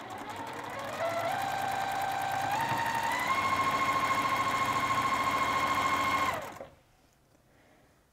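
Juki TL-2010Q straight-stitch sewing machine stitching a seam: its motor whine climbs in steps as it speeds up over the first three seconds, runs steady at speed, then stops about six and a half seconds in.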